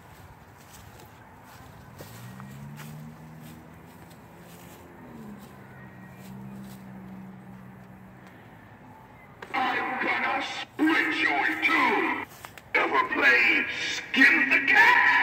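A faint, low, drawn-out voice-like sound, then loud high-pitched voices from about ten seconds in, broken by brief pauses.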